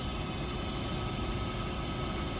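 Steady background noise of a large hall: an even hiss with a few faint steady tones, holding at one level throughout.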